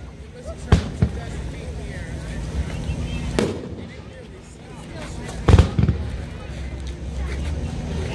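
PyroLand Dead Ringer consumer firework firing aerial shots that burst with sharp booms. There are two close together about a second in, one near the middle, and a quick pair a little past the halfway point, with a low rumble between the reports.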